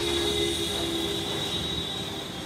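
A steady high-pitched mechanical squeal with lower steady tones beneath it. It starts suddenly and lasts about two seconds.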